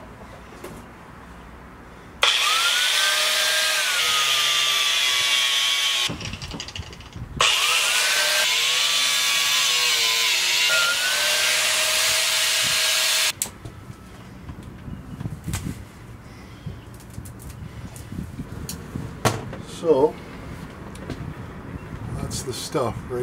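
Handheld power drill run in two bursts of about four and six seconds, its motor whine sagging and recovering as it bites into the work, over a loud hiss of cutting.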